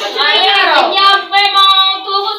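A boy's high voice vocalising without clear words, in drawn-out notes, with one pitch sliding up and falling back about half a second in.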